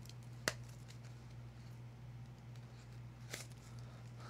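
Faint handling of a small cardboard gift box being opened by hand, with a sharp click about half a second in and a softer one near the end, over a low steady hum.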